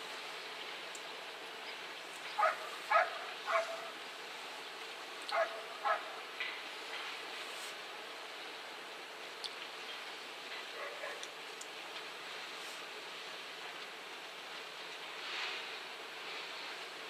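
Five short, sharp animal calls, three in quick succession and then two more, over a steady background hiss.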